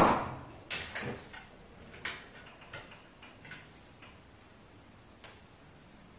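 A refrigerator door swinging shut with a sharp knock that rings out briefly, followed by several faint, scattered taps and knocks over the next few seconds.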